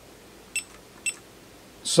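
Fluke 175 digital multimeter beeping: two short, high beeps about half a second apart as its front-panel buttons are pressed.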